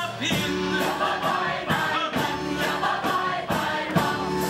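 Stage musical chorus singing an up-tempo number together over instrumental accompaniment with a steady beat.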